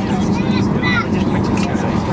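Airliner cabin during taxi: a steady low hum from the jet engines, with passengers' voices chattering over it.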